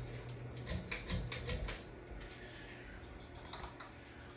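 44-inch Hunter ceiling fan humming as it spins, with a run of sharp clicks and rattles as its pull chain is yanked; the hum fades out about a second and a half in, and a few more clicks come near the end.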